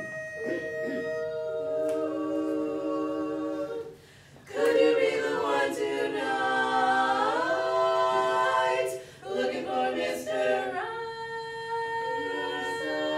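Four women's voices singing a cappella in close harmony: held chords broken by two short breaths, about four seconds in and again near nine seconds, with the voices sliding up together midway through.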